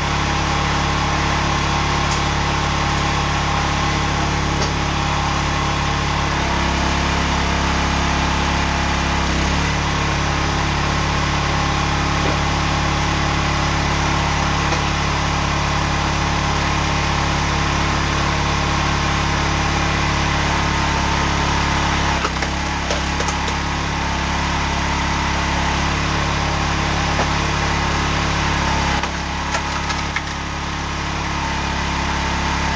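Small engine of a log splitter running steadily, its note changing for a few seconds about a quarter of the way in and briefly twice more later as logs are split.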